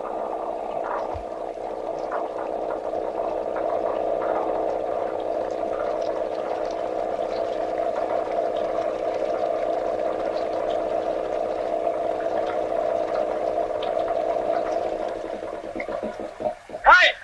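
Steady rush of water gushing from an irrigation pumpset's outlet pipe into a field channel, with a constant droning note running through it. It fades away just before the end.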